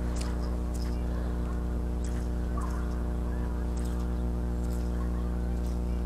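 A steady low buzzing hum with a stack of evenly spaced overtones, holding one level throughout, with a few faint ticks over it.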